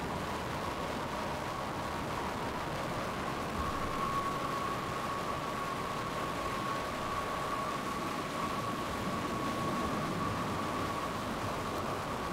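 Steady rushing wind noise from tornado storm footage, with a faint steady high tone running through it.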